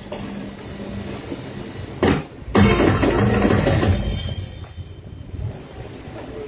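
Live church band music on keyboard and electric guitar: low and quiet at first, then a sharp knock about two seconds in, after which the band comes in loudly and gradually fades.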